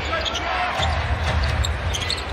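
NBA arena sound during live play: a steady crowd hum with a basketball being dribbled on the hardwood court and short high squeaks.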